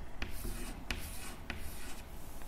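Chalk writing on a chalkboard: a few short, sharp taps and scratches as figures are written.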